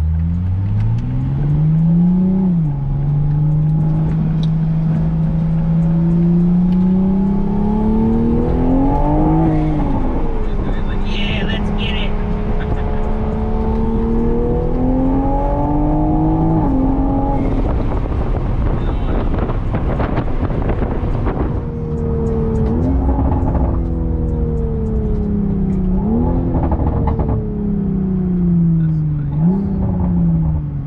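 Mk5 Toyota Supra's turbocharged B58 inline-six, with aftermarket downpipe, intake and charge pipe, heard from inside the cabin. It revs up through the gears with several upshifts, then crackles and pops from the exhaust on lift-off for a few seconds. The revs fall away with three quick throttle blips on the downshifts.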